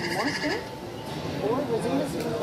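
People's voices talking, with a short high warbling electronic tone at the very start.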